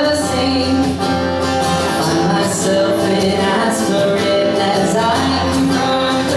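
Live acoustic pop song: acoustic guitar accompanying a man singing lead through a microphone, with the music continuing steadily.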